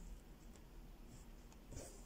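Faint rustle of embroidery thread and needle being drawn through cross-stitch fabric stretched in a hoop, a little louder near the end.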